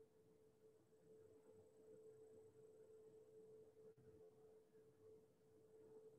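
Near silence, with only a faint steady hum in the audio line.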